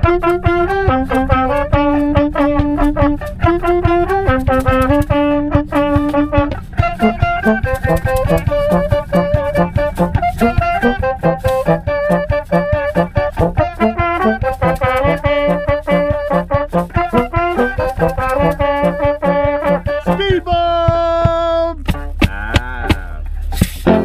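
A brass band playing a lively jazz tune in the close space of a car: trumpet and trombone over a bass line and a steady beat. The tune ends on a long held note about twenty seconds in.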